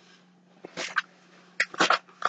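Brief rustling of a folded T-shirt and its packaging being lifted out of a cardboard subscription box: a few short bursts, the first just under a second in and more about a second later, over a faint steady low hum.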